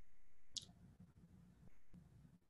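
A single short, sharp click about half a second in, over faint low room hum.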